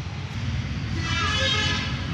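Low steady traffic rumble, with a vehicle horn sounding for about a second from halfway through.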